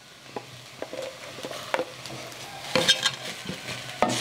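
Sliced tomatoes being spooned with a wooden spoon into shredded beef frying in a clay cazuela: light taps of the spoon and sizzling that flares up loudest about three seconds in.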